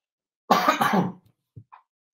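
A man clears his throat once, a short rough burst about half a second in, lasting under a second.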